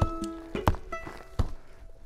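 Sledgehammer striking and packing partly frozen dirt into a used car tire: three dull blows about 0.7 s apart, over background music with held notes.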